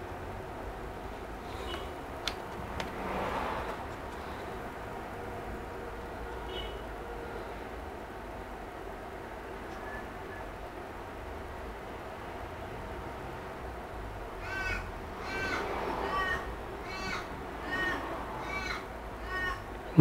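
Steady low background hum with a single sharp click about two seconds in. In the last few seconds there is a run of short repeated bird calls, about two a second.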